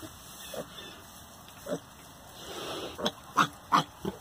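Piglet grunting: a couple of short, spaced-out grunts, then a quicker run of three near the end.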